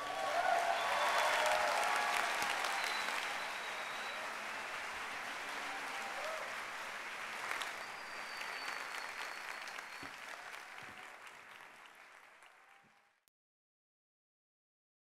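Large audience applauding, loudest at first, then fading away and stopping just before the end.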